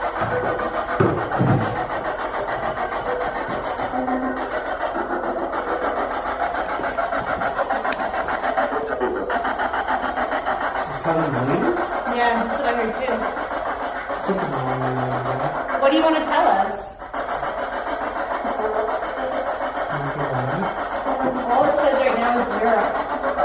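Spirit box sweeping through radio stations: continuous, rapidly chopping radio static with brief snatches of voices breaking through. The sound drops out briefly about three-quarters of the way through.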